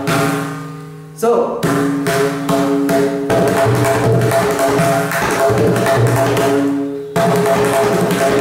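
Several tuned tabla drums struck in fast strokes with both hands, their heads ringing with clear pitched tones. Near the start one stroke is left to ring and fade for about a second, then a sharp stroke with a short rising pitch sets off continuous rapid playing, with a brief lull near the end.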